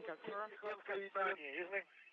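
A man talking over a thin radio link, with a brief pause near the end.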